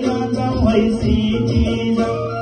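A man singing a Nepali song into a microphone over backing music with a steady beat.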